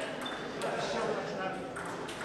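Indoor sports-hall hubbub of voices, with one short high ping of a table tennis ball a moment in.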